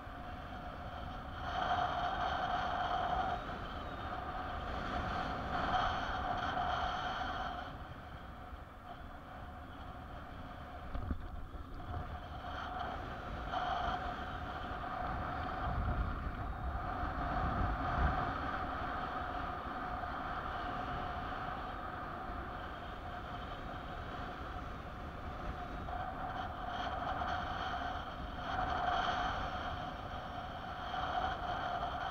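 Airflow rushing over the microphone of a paraglider in flight in gusty wind, with stronger low buffeting in the middle. A steady whistle-like tone comes and goes in stretches of a few seconds.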